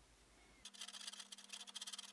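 Faint, rapid, irregular ticking and crackling of a small stick stirring two puddles of glue together on paper, starting about two-thirds of a second in.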